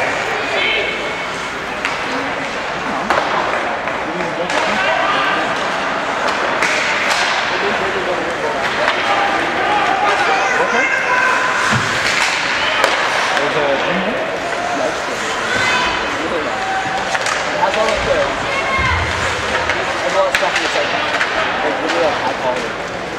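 Ice hockey game in an echoing arena: players' and onlookers' voices calling out throughout, with a few sharp slams and knocks of sticks, puck or bodies against the boards.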